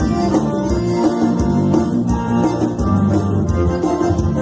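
Live band music led by a piano accordion with an electronic keyboard, over a steady beat and bass line.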